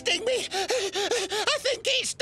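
A cartoon man's voice giving rapid, repeated panicked gasping cries, about six short rising-and-falling yelps a second.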